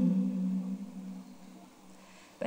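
A woman's voice holding one low sung note, dipping slightly in pitch at the start, then fading out over about a second and a half.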